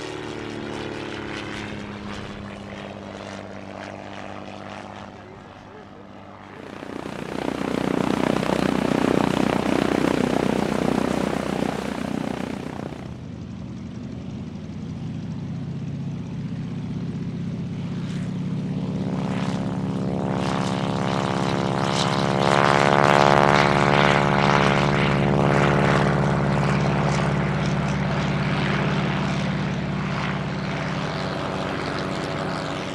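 Single-engine propeller aircraft: a trainer's engine fading as it flies past, then several seconds of loud rushing noise that cuts off abruptly. After that, a Zero-replica warbird's engine builds to full power on its takeoff roll and is loudest in the last third as it lifts off.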